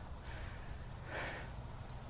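Quiet outdoor background: a steady low rumble and faint hiss, with a soft, brief swell of noise a little over a second in.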